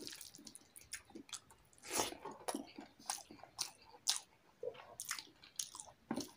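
Close-up eating by hand: wet squelches and smacks of fingers mashing boiled egg into rice on a metal plate, mixed with mouth chewing, as irregular short clicks.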